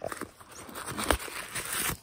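Tissue paper packing crinkling and rustling close up as it is handled inside a bag, with a sharp crackle about a second in.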